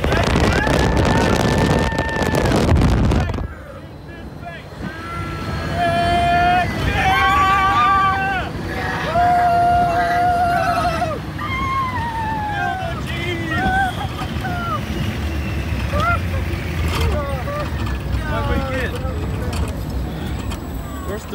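Wind rushing over the microphone of an open ride vehicle at high speed, with a held shout, cutting off sharply after about three and a half seconds as the car slows. Then riders give long drawn-out calls and cries over the low rumble of the moving ride vehicle.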